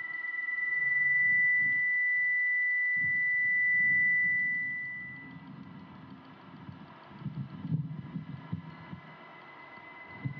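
An electronic tone rings steadily high over a low, irregular throbbing pulse. The tone swells over the first second and fades out about five seconds in. The pulse carries on and grows busier near the end.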